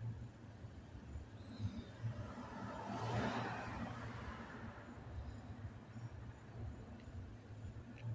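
A car engine idling as a low steady hum, with a rush of passing-vehicle noise that swells and fades about three seconds in.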